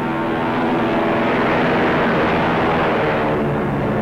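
Propeller transport plane passing low overhead: its engine noise swells to a peak about two seconds in, then fades, over orchestral film music.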